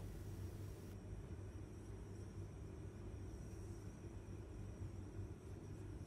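Faint steady hiss with a low hum and a thin high whine, the background noise of a voice-over recording; no distinct event.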